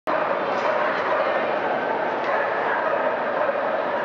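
Steady din of many voices and dogs barking, echoing through a large indoor hall.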